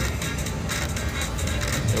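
Electronic slot-machine music over the steady din of a casino floor.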